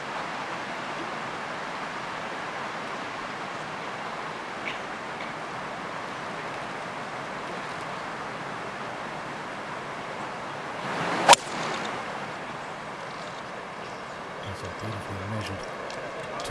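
A single sharp crack of a golf club striking the ball on a long fairway approach shot, about eleven seconds in, over a steady outdoor background hiss. The strike is called "a good contact".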